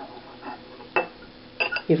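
A few light clicks of a brass-whorled takli spindle turning with its tip in a small ceramic support bowl. A voice begins right at the end.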